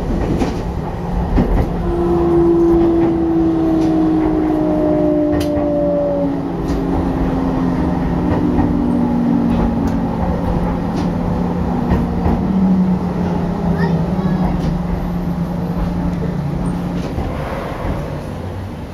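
Hokuetsu Express electric train heard from inside, braking into a station: a motor whine falls slowly in pitch over several seconds over steady running noise and occasional wheel clicks. The sound eases off as the train draws to a stop.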